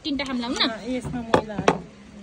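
Two sharp knocks on a wooden tabletop, about a third of a second apart, a little over a second in, after a brief stretch of voice.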